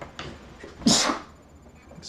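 A person sneezing once: a short breathy intake, then one loud, sharp sneeze about a second in.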